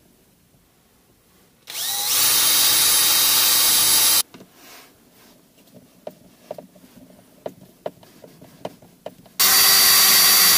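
Cordless drill drilling screw holes in a car's centre console. It makes one run of about two and a half seconds that rises as it spins up, then a few light clicks and taps, then a second run that starts near the end.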